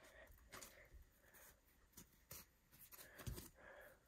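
Faint, scattered soft ticks and rubs of a stack of baseball trading cards being thumbed through by hand, one card slid off the front at a time.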